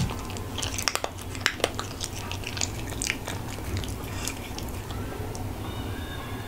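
A cat chewing dry kibble and freeze-dried chicken pieces: close, irregular crisp crunches, thickest in the first half and thinning out towards the end.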